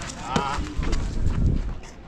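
Running footsteps on a hard outdoor basketball court, a quick run of heavy low thuds near the middle, with a short shout just before them.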